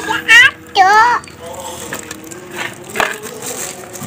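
Thin plastic food bags being untied and opened over plastic bowls, with faint crinkling and a sharp click about three seconds in. Near the start, two short, high-pitched, wavering cries under a second apart are the loudest sounds.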